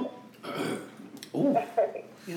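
A person burping once, a short low croaky sound past the middle.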